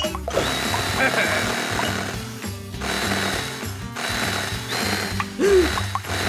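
Cartoon sound effect of a cordless power drill running: a steady high whine over a rattling buzz, cutting out briefly twice.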